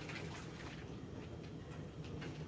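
Faint handling sounds of hands rummaging in a raw turkey and its giblet bag in a sink: a few soft rustles and clicks near the start, over a steady low room hum.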